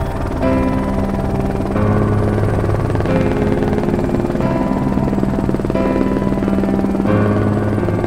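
Background music: sustained chords over a deep bass note, the harmony changing about every second and a half.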